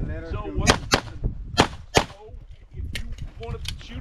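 A string of about seven handgun shots fired at a competition stage, several in quick pairs, each a sharp crack with a short echo.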